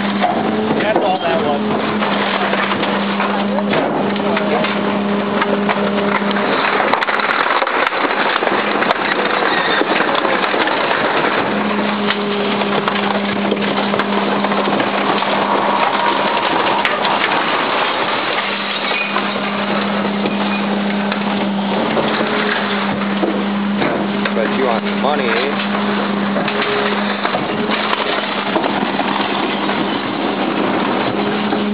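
Garbage truck compacting a load of scrap wood and junk: continuous crunching and clattering over a low mechanical hum that cuts out a few times and comes back.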